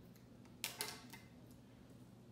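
Scissors cutting heat tape: two quick, crisp snips a little over half a second in, then a fainter one.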